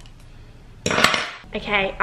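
A short clink and clatter of cutlery against a dinner plate about a second in.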